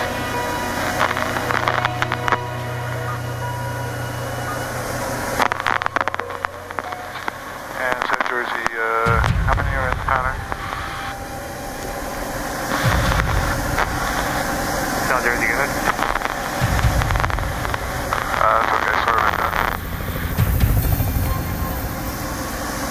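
Cabin noise of a Diamond single-engine light aircraft in flight: a steady engine drone, with short stretches of voices over it.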